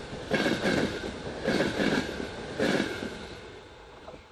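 A train rolling on jointed track: the wheels clack in pairs about once a second over a steady rumble, fading toward the end.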